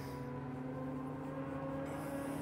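Road traffic: a steady, fairly quiet engine hum with a low rumble that holds an even pitch throughout.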